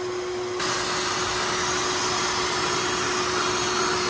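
Vacuum running steadily, drawing air through a hose into a clear jug trap to suck in live yellow jackets. The sound shifts slightly about half a second in and then holds steady.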